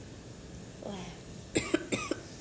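A young woman coughing three times in quick succession, short sharp coughs about a second and a half in.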